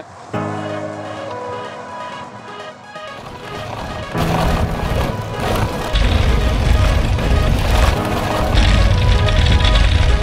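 Background music: held synth-like chords that build about four seconds in into a louder, fuller section with heavy bass.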